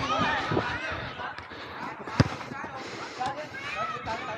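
Players' voices calling out across a small-sided football pitch, with one sharp kick of the ball about two seconds in and a few softer ball touches.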